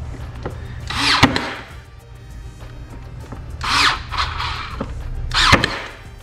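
Ryobi cordless brad nailer firing three times into MDF stays, each shot a short burst of noise, the first and last ending in a sharp crack. Background music runs underneath.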